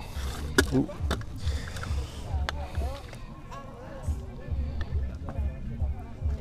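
A plastic toy sewing machine being picked up and handled: a few sharp clicks, the loudest about half a second in. Faint talk from nearby people and a low fluttering rumble run underneath.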